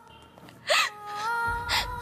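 A woman's sharp gasping sob, then more crying breaths, over a sustained dramatic background-music chord that swells with a low bass about halfway through.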